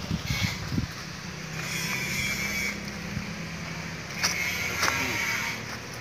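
A low, steady motor-vehicle engine hum for a couple of seconds, over outdoor background noise, with a few low thumps in the first second.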